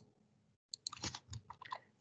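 A few faint, sharp computer-mouse clicks over near silence, with some soft low noises in between, picked up by a computer microphone.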